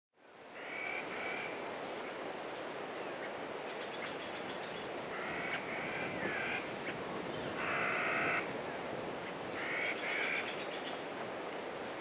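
Frog croaking: about four short, raspy croaks a few seconds apart, over a steady background hiss.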